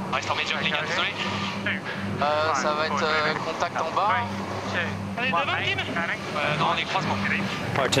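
Speech: crew voices talking over onboard comms, over a low steady hum that cuts in and out.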